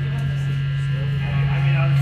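Steady electrical hum from the stage amplifiers and PA, with faint wavering instrument or voice sounds coming in after about a second.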